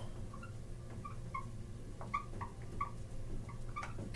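Dry-erase marker squeaking on a whiteboard as it writes, a series of short, faint high squeaks with a few light ticks.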